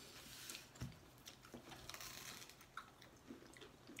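Faint sounds of people eating: chewing and biting into sandwiches, with a few small clicks.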